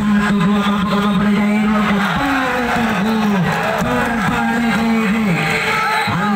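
A man's voice calling out loudly and continuously, as from a match commentator: one long held tone for about the first two seconds, then a run of rising-and-falling, sing-song calls.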